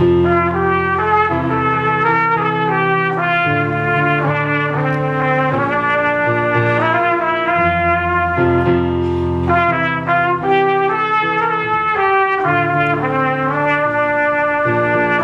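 Pocket trumpet playing a solo melody line, note following note, over sustained low accompaniment chords that change every two to three seconds.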